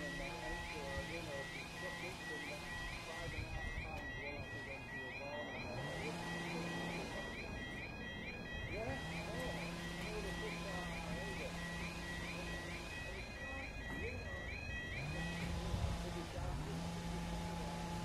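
British level crossing yodel alarm warbling rapidly over and over while the road lights flash and the barriers lower. It stops suddenly near the end, once the barriers are fully down.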